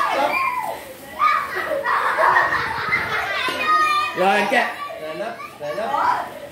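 Several children talking and calling out at once in lively play, their voices overlapping without clear words.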